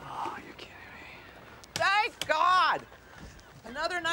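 Voices from a film scene: a faint breathy whisper at the start, then a loud, high-pitched shouted exclamation about two seconds in, with speech starting again near the end.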